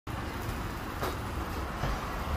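Steady low rumble with an even hiss over it: outdoor ambience.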